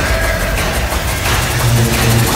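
Loud, dense film-trailer mix: dramatic music over a steady, low, engine-like rumble of battle sound effects.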